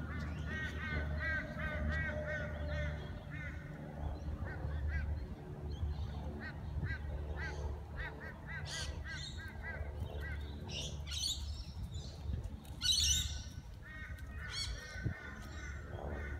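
Birds calling: quick runs of short, arched chirps throughout, with several louder, harsh screeches in the second half, over a steady low rumble.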